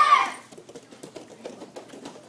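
A short, loud, high-pitched call from a person's voice right at the start, followed by a low murmur of a crowd with scattered light clicks and shuffling.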